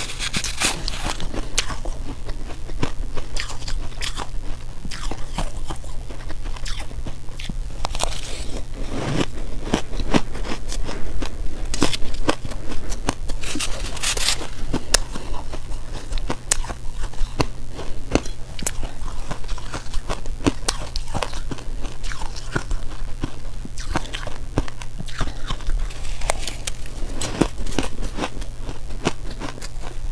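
Close-miked crunching and chewing of crumbly frozen purple ice, in many irregular crackling bites. A low steady hum runs underneath.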